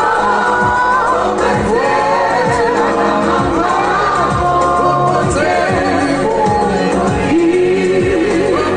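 A small vocal group of women and a man singing into microphones over amplified backing music with a steady beat.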